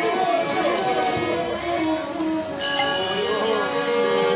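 Bengali nam kirtan devotional music: a wavering singing voice over steady held instrumental notes, with a brighter ringing layer coming in suddenly about two and a half seconds in.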